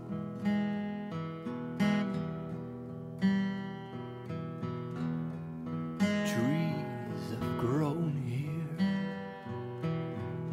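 Acoustic guitar strumming chords in an instrumental passage of a song, with a fresh strum about every second. From about six seconds in, a wavering, bending melody line plays over the chords for a few seconds.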